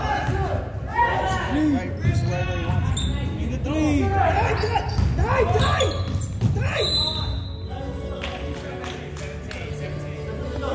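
A basketball being dribbled on a gym floor, with players' voices calling out over it in a large, echoing hall.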